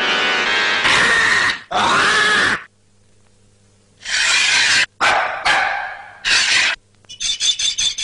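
Harsh, dog-like barking and growling sounds in short bursts: two about a second in, then four more from about four seconds in. Near the end a rapid run of sharp clicks starts.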